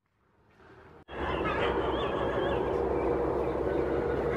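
Silence for about a second, then a steady outdoor background: wind rumbling on the microphone, with a few faint bird calls.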